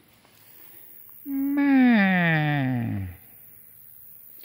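A goat bleating once: a single call of about two seconds that slides steadily down in pitch.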